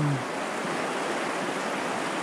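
River water rushing over rocks and through rapids, a steady even hiss.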